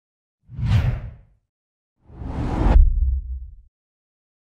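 Two whoosh sound effects for an animated intro title. The first is short, about half a second in. The second, about two seconds in, builds up, cuts off sharply in its upper part, and leaves a low rumble that dies away.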